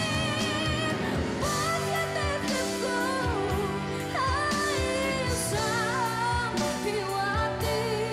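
A young woman singing a Tagalog power ballad with strong vibrato on long held notes, stepping up to a higher note about halfway through, over band accompaniment with a steady drum beat.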